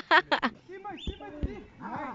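A short spoken exclamation, then faint rising-and-falling calls with two dull thuds about a second in.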